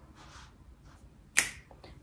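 A single sharp click about one and a half seconds in, against quiet room tone.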